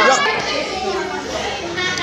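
Several schoolgirls' voices talking and calling out over one another, with no single clear speaker.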